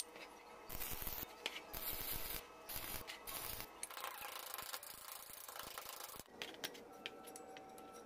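Steel rod scraping and rubbing against the steel pins of a homemade hand-operated bending jig as it is worked and bent, in irregular bursts, followed by a few light metal clicks near the end.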